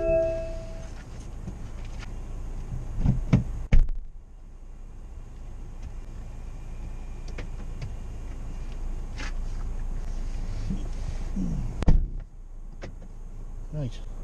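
Car door sounds: a steady electronic chime that stops just under a second in, then clunks and thumps of the door being handled, about three to four seconds in and again near twelve seconds. Each set is followed by a sudden drop in the background noise, and there is a steady hiss between them.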